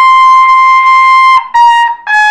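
Trumpet playing a held high note for about a second and a half, then after a brief break a shorter, slightly lower note.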